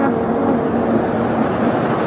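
Whooshing noise-sweep effect in a breakdown of an electro dance remix, with the drum beat dropped out and a faint held tone underneath.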